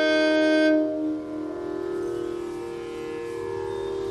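Carnatic violin holding a long bowed note that stops about a second in, leaving only a steady, unchanging drone underneath.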